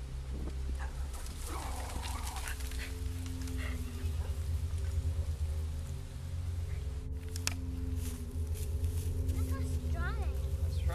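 Background music of sustained low notes, with a goat bleating about a second and a half in.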